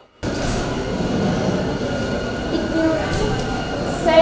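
Opening of a video's soundtrack played through the room's speakers: a steady, dense noise that starts suddenly just after the beginning and holds at an even level.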